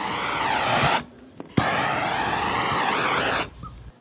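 Handheld gas torch on a yellow cylinder blowing its flame with a loud, steady hiss, in two bursts: one about a second long, then, after a short pause, a second of about two seconds that starts with a sharp click.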